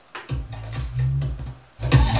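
A bass-heavy house music loop playing back through studio speakers: it starts shortly in, stops after about a second and a half, and starts again louder near the end, as the track is played and restarted from the editing software.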